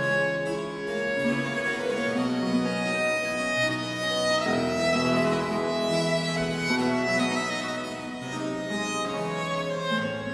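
Baroque violin playing a slow melody of long bowed notes, with harpsichord accompaniment underneath.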